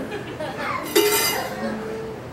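A coin, a half-dollar, dropped into a small metal bucket, making one sharp metallic clink about a second in that rings briefly.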